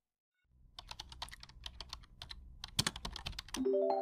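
Rapid computer-keyboard typing clicks over a low rumble, starting about half a second in, then a chord of several held notes comes in near the end, as in a channel logo sting.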